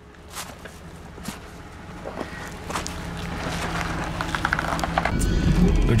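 Jeep Cherokee XJ engine running at a slow crawl over rock, with irregular crunching and clicking from the tyres on granite and gravel, growing steadily louder. The low engine sound grows stronger about five seconds in.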